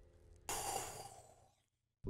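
A single breathy sigh: one sharp exhale about half a second in that fades away over roughly a second, followed by dead silence.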